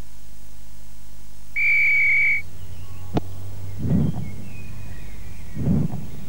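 A referee's whistle blown once, a single steady high note lasting just under a second. It is followed by a sharp click and, later, two dull thuds, over a faint steady low hum.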